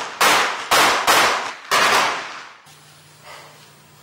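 A handgun fired four times in quick succession over the first two seconds, each shot trailing off. After the shots a faint steady hum remains.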